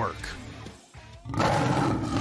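Tail of a music sting fades to a brief lull, then about one and a half seconds in a recorded lion's roar comes in suddenly and loud: the lion sound logo opening a BetMGM ad.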